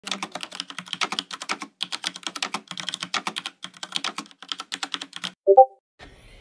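Rapid typing on a computer keyboard, a fast run of keystrokes lasting about five seconds. Near the end comes a brief electronic tone of a few notes, louder than the typing.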